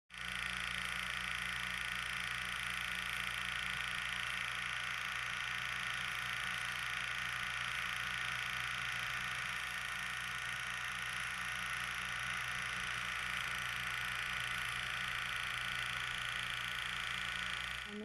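A steady hiss with a low hum underneath, unchanging throughout. It cuts in abruptly at the start and stops suddenly a moment before speech begins.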